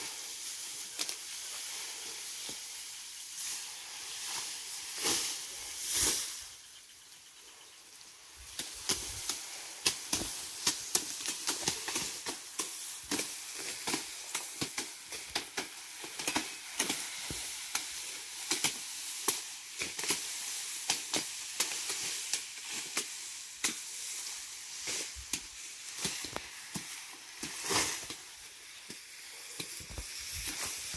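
Tall elephant grass being cut by hand: frequent sharp snaps and chops as stalks are cut, over a steady high rustle of the leaves.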